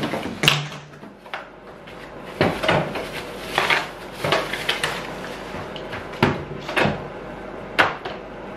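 Plastic parts of a Bissell PowerForce Helix upright vacuum being handled out of its cardboard box: a series of irregular sharp knocks and clatters as pieces are lifted and set down, with rustling of the plastic bag wrapping.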